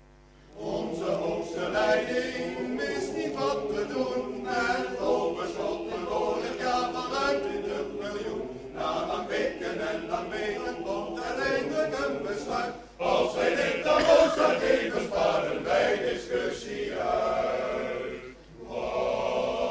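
Choir singing a song in Dutch, the voices entering after a short pause about half a second in and breaking briefly between lines near the end.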